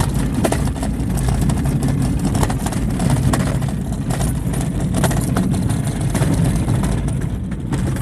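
Car driving on a rough dirt road, heard from inside the cabin: a steady low engine and tyre rumble with frequent small knocks and rattles from the bumpy surface.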